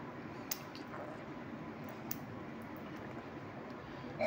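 A small DC water pump submerged in a water-filled container, switched on by a touch sensor, running as a faint steady noise while it pushes water out through a plastic tube. Two light clicks come about half a second and about two seconds in.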